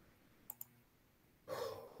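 Two quick clicks of a computer mouse, a tenth of a second apart, about half a second in, over a quiet room.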